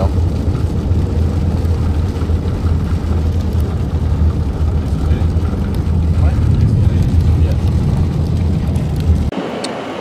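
Road noise inside a moving car: a steady low drone from the tyres and engine with a hiss of air over it. It cuts off abruptly about nine seconds in.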